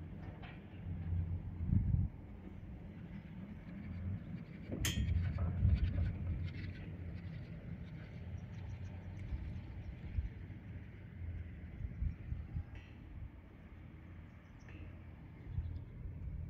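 Chairlift ride: wind buffeting the microphone as a low, gusty rumble, with a sharp click about five seconds in and a couple of seconds of rattling clatter as the chair's haul rope runs over the sheaves of a lift tower.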